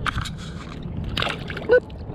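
Water splashing and sloshing as a bass is let go by hand at the side of the boat and kicks away. A short pitched sound near the end is the loudest moment.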